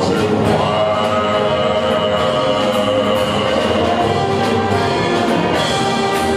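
Live jazz big band playing: the horn section holds long sustained chords over the rhythm section, with steady cymbal and drum strokes.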